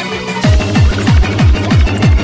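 Hardtek electronic dance music from a DJ set. About half a second in, a heavy kick drum drops back in after a quieter stretch, each hit sweeping down in pitch, nearly four a second, under synth tones.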